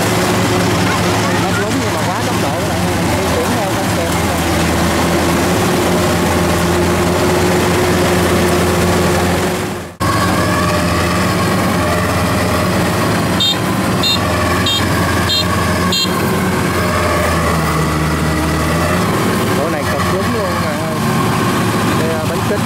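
Kubota combine harvester's diesel engine running steadily as it works through soft mud. The sound fades out briefly and returns about ten seconds in. A little later comes a run of about five short high beeps.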